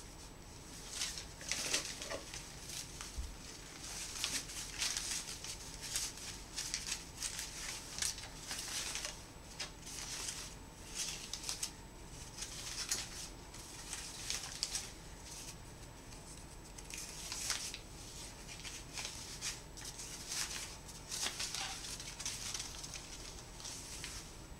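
Ribbon rustling and crinkling as hands fold and pinch it into bow loops, in many short, irregular rustles.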